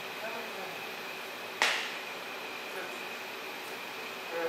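Steady hum of hall ventilation with a faint constant high tone, and a single sharp click about one and a half seconds in.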